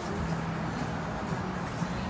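Steady rumble of road traffic outdoors.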